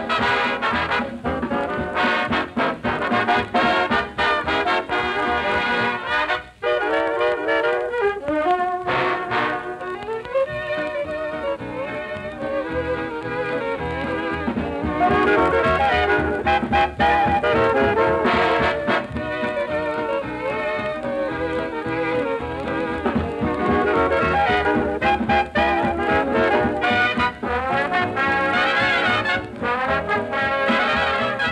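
Swing dance band playing an instrumental number, with trumpets and trombones prominent.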